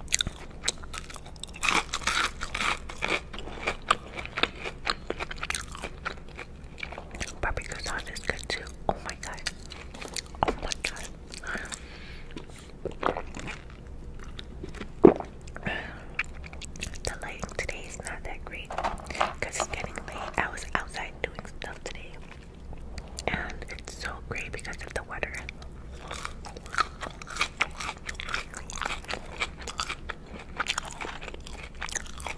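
Close-miked eating sounds: a crisp-breaded chicken McNugget dipped in barbecue sauce being bitten and chewed, with irregular crunches and wet mouth sounds. One sharper crunch about midway is the loudest moment.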